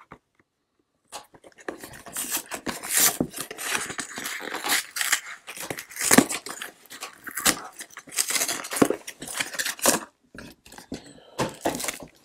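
A cardboard hanger box of trading cards being torn open by hand: a long run of irregular crackling and ripping, starting after about a second of silence, then the card stack in its cellophane wrap being handled, with one more short crackle near the end.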